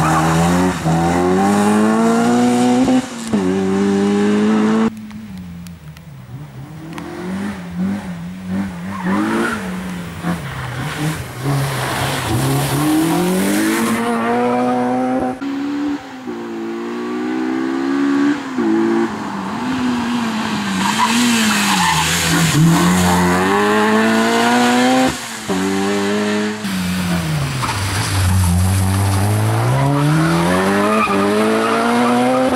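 Honda Civic Type R's four-cylinder engine driven hard, revving up and dropping back again and again through gear changes and corners, with tyre squeal. The engine fades for a few seconds about five seconds in, then comes back loud.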